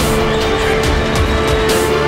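Loud highlight-reel music soundtrack, a dense track with one note held through and a steady beat on top.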